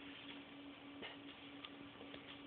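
Near silence: a faint steady hum with a couple of soft ticks.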